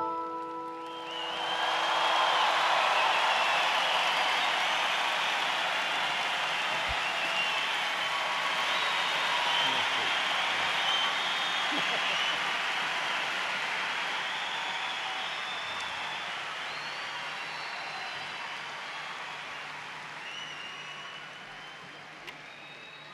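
The last piano chord of a song rings out, and about a second in a large audience breaks into applause and cheering, with whistles. The applause is loudest soon after it starts and slowly dies down.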